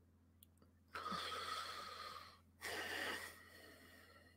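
A man breathing close to a microphone: a longer breath about a second in and a shorter one near the end, over a faint steady hum.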